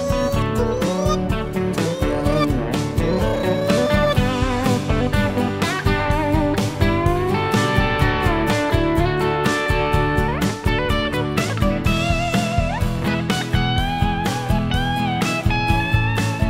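Instrumental song music: a guitar lead with bending, sliding notes over a steady drum beat.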